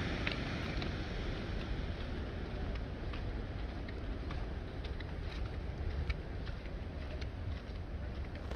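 Wind rumbling on the microphone over a steady wash of sea surf, with faint irregular clicks of footsteps on the paving stones.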